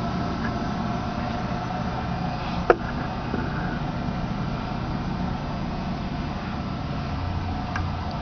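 Homemade 10 hp rotary phase converter running, a steady electric-motor hum, with one sharp click a little under three seconds in.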